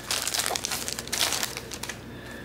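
Thin clear plastic wrapping crinkling and crackling in quick, irregular rustles as it is pulled off a bundle of banknotes.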